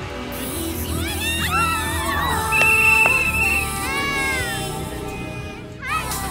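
Background music over a steady low bass, with high pitched glides that swoop up and down again and again, and a short wavering high tone near the middle.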